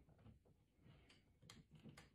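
Near silence with three faint, short clicks in the second half, from the plastic parts of a small action figure being handled and pressed together.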